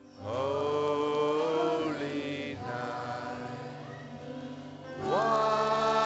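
A woman singing long held notes with a small band behind her (bass guitar, piano and guitar). A note slides up into pitch just after the start and is held for nearly two seconds, the band goes quieter, and a second note slides up and is held from about five seconds in.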